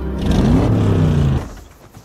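A 1967 Chevrolet Impala pulling up, its engine running loud and rising in pitch, then cutting off about a second and a half in.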